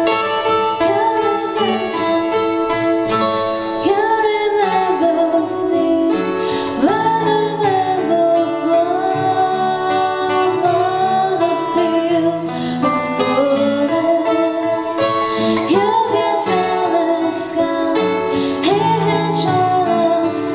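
A woman singing a song with guitar accompaniment, her held notes sliding and wavering in pitch.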